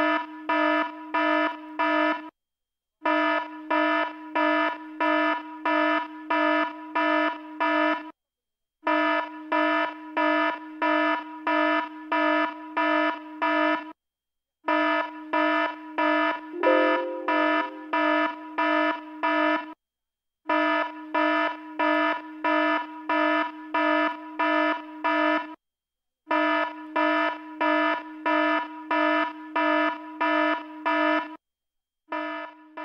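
Buzzing alarm beeping about twice a second in runs of about five to six seconds, each run cut off by a short complete silence. A brief extra sound rides over it about halfway through.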